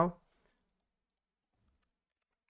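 The tail of a spoken word, then near silence with a couple of faint, isolated clicks.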